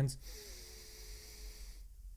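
A man breathing in audibly close to the microphone: one steady airy inhale lasting about a second and a half, with a faint thin tone in it, ending abruptly.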